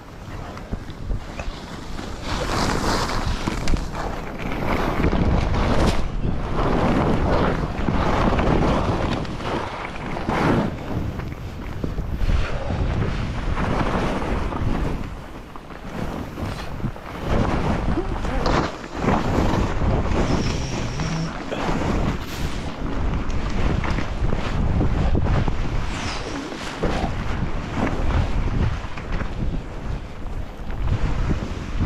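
Wind rushing over the microphone of a camera skiing downhill through powder, with the hiss of skis in the snow; the noise swells and eases every second or two.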